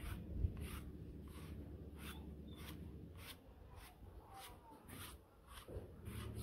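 A grooming brush dragged through a long-coated German Shepherd's fur in repeated scratchy strokes, about two a second.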